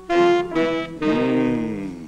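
Music: a wind instrument, brass or saxophone-like in tone, plays a short phrase of three held notes, the last one bending up and then sliding down as it fades out near the end.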